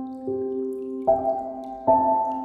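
Slow ambient piano music: three soft notes struck about a second apart, each one ringing on over the last, with faint dripping rain behind.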